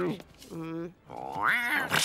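A cartoon man's wordless vocal noises: a short held hum, then a rising growl as he pulls a monster face.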